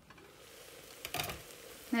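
Glass lid lifted off a pressure-cooker pot, with a short clatter of the lid about a second in, over a faint sizzle of the gourd and lentils cooking inside.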